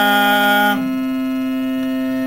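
A chanted note held by a voice ends about three-quarters of a second in, leaving a steady musical drone of a few held tones sounding on its own.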